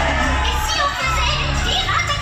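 A crowd of children shouting and cheering over music with a steady bass line.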